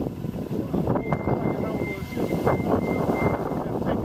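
City street traffic noise with wind buffeting the microphone, a steady rumble. A thin, high, steady whine sounds from about a second in until past three seconds.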